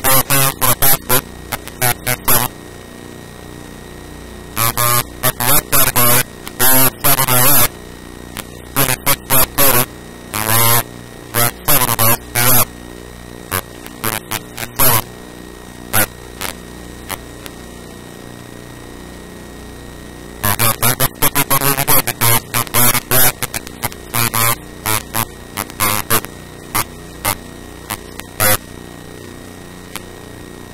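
A man speaking in loud, distorted bursts with pauses, over a steady electrical mains hum.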